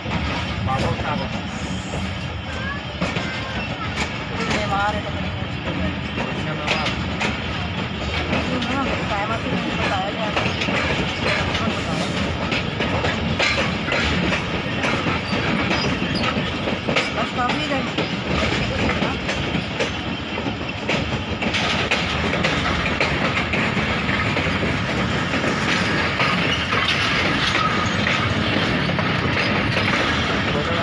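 Passenger train heard from an open coach doorway as it rolls through a station yard: steady running noise with frequent wheel clicks over rail joints and points. The noise grows louder about two-thirds of the way in.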